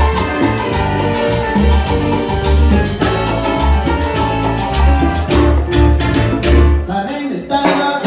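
Live salsa band playing, with a steady bass pulse and dense Latin percussion that includes a metal güiro scraped in rhythm. About seven seconds in, the bass drops out for a short break, then the band comes back in.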